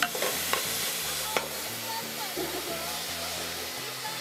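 Chopped onion and carrot being tipped from a plastic bowl into a pot and scraped out with a wooden spoon, with a few sharp knocks of the spoon in the first second and a half, over a steady hiss.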